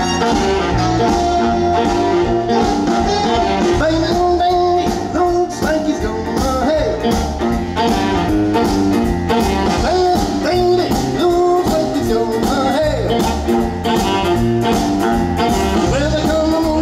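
Live big band playing with a steady beat: saxophone section, drum kit, bass and keyboard.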